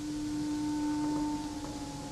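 Orchestra softly holding a sustained low note with a fainter higher tone above it. The low note fades away about a second and a half in.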